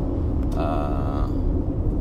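Steady low rumble inside the cabin of a 2020 Toyota RAV4 cruising at about 80–85 km/h, its 2.5-litre engine turning only about 1,400 rpm in a high gear of the eight-speed automatic, so the engine is just ticking over beneath the road noise.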